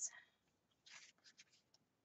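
Faint rustle of paper sticker-book sheets being lifted and turned by hand, a few soft brushes about a second in.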